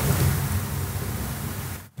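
A long, breathy rush of air close to the microphone, like a man's drawn-out exhale, fading over nearly two seconds and then cutting off just before speech resumes.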